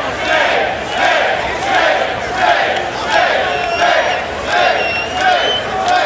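Concert crowd chanting in unison, a short shout repeated about twice a second. A thin high whistle sounds over it in the second half.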